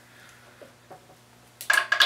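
A few faint clicks as a stubborn fuel line is worked loose by hand at a small engine's carburettor, then a sharper, louder clatter near the end.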